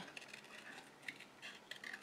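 Small craft scissors snipping through card stock: a run of faint, irregular snips.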